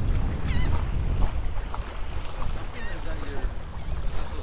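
Wind buffeting the microphone, a steady low rumble, over choppy water. A few faint wavering bird calls come through, about half a second in and again near three seconds.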